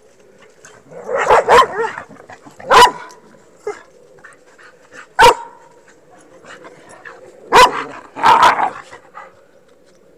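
A dog barking: about six short, loud barks in irregular groups, some in quick pairs, with pauses of a second or two between.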